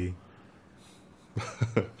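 Speech breaks off into a second of quiet room tone, then a short cough of a few quick bursts about one and a half seconds in.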